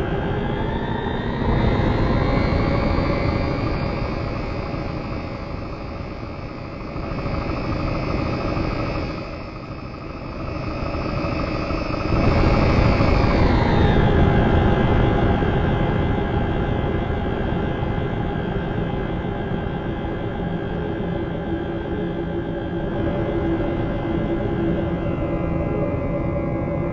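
Live electronic improvisation: a dense electronic drone of many held tones over a low rumble. The upper tones glide up in pitch over the first two seconds, hold, then slide back down about 13 seconds in.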